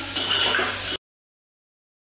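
Onions frying on high heat in an aluminium pressure cooker, sizzling while a spoon stirs and scrapes the pot; about a second in, the sound cuts off abruptly into dead silence.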